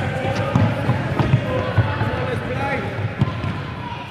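Futsal ball kicked and bouncing on a wooden sports-hall floor, several dull thumps at irregular moments, under children's voices.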